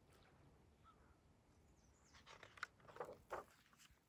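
Near silence, with faint rustling and a few soft clicks of a picture book's paper page being turned about two seconds in.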